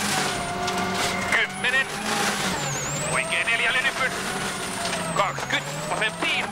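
A World Rally Car's turbocharged engine running hard at high revs on a gravel special stage, heard on board. Its pitch dips twice, around three seconds in and again near the end, then climbs back, with a thin high whistle above the engine.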